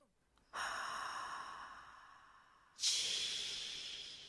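Two long breath-like hissing sounds: the first starts suddenly about half a second in and fades away over about two seconds, the second starts suddenly near three seconds in and fades the same way.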